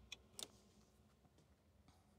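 Near silence: quiet room tone with a few faint clicks, mostly in the first half second.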